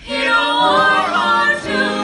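Vocal ensemble of male and female singers singing together in harmony, a cappella, entering together right at the start after a short pause and holding sustained notes.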